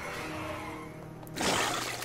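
Soft background music from an animated cartoon soundtrack. About one and a half seconds in, a loud rushing sound effect from the cartoon cuts in as a giant cake bursts over a cartoon pony.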